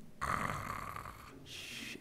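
A man making a mock snore: one breathy snore of about a second, then a shorter, fainter hiss.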